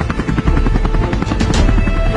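Helicopter rotor chopping in a rapid, even beat, heard over background music.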